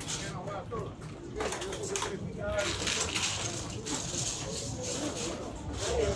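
Indistinct voices of people talking in the background, over a steady hiss of outdoor ambient noise.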